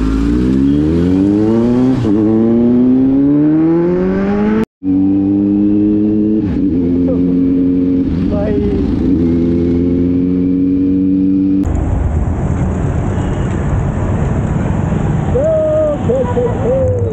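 Kawasaki Z900's inline-four engine accelerating, its pitch climbing steadily for about four seconds, then holding a steady pitch as the bike cruises. About twelve seconds in the engine tone gives way to a rougher rush of noise.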